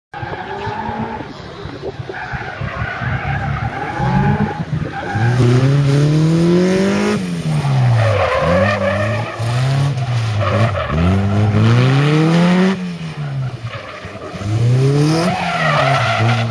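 Striker kit car's engine idling, then revving up and dropping back again several times as the car accelerates hard and lifts off between cones. Tyres squeal as it turns.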